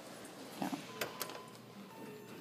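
Mitsubishi hydraulic elevator's arrival signal: a single steady beep, faint, starting about a second in and lasting about a second, with a few soft clicks around its start, as the car arrives at the landing.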